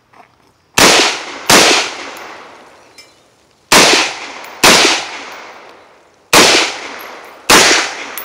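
AR-15 rifle fired in three pairs of shots, the two shots of each pair under a second apart and a couple of seconds between pairs, each shot trailing off in a long echo. The pairs are double taps, two shots per target.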